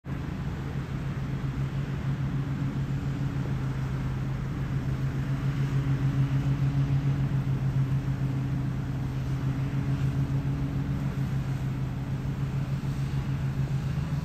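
Vehicle engine idling, a steady low hum with a fast, even pulse, heard from inside the cab.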